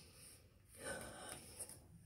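Near silence: quiet room tone, with one faint soft noise a little under a second in.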